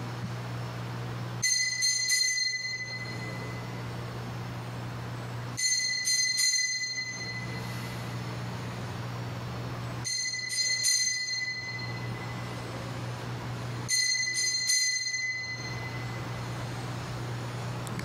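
Altar bells (Sanctus bells) rung four times, about four seconds apart, each ring a short jingling cluster of bright tones. They mark the elevation of the consecrated host at Mass.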